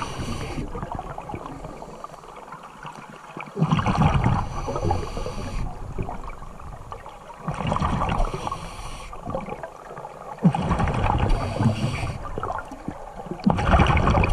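Scuba regulator breathing heard underwater: a rhythmic cycle of breaths, each with a hiss and a burst of bubbling exhaust, about every three to four seconds.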